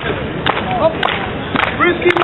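Murmur of a standing crowd, with snatches of voices and a few sharp cracks.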